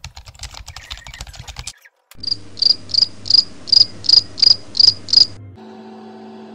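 Rapid typing on a laptop keyboard, a quick run of key clicks. After a short break comes a steady low hum with nine high, evenly spaced chirps over it, about two or three a second, which stop shortly before the end.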